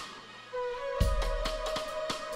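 Live band music starting up. A held high note comes in about half a second in, then a deep bass note lands about a second in, over quick, light, regular percussion ticks.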